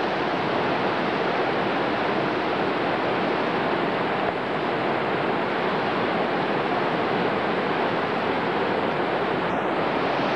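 Steady, loud rush of whitewater rapids: Class 3 river water breaking over waves and holes.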